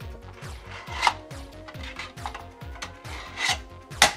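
3D-printed plastic lampshade panels scraping and rubbing as they are slid into the slotted posts of a plastic base, with a few sharper plastic clicks and knocks, the loudest about a second in and another near three and a half seconds.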